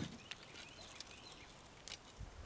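Faint background hiss with two light clicks, one at the start and one near the end: a spinning rod and reel being handled in a canoe.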